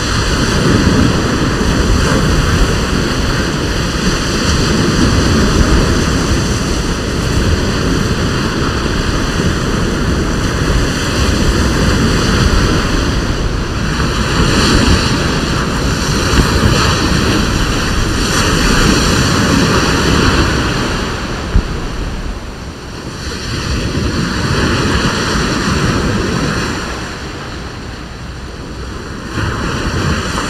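Small waves breaking and washing up on a sandy beach, mixed with wind rushing over the microphone; the rushing swells and eases in slow surges, with one sharp click about two-thirds of the way through.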